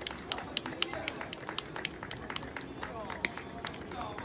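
Spectators clapping irregularly, several sharp claps a second, with one louder crack about a second in, over faint crowd voices.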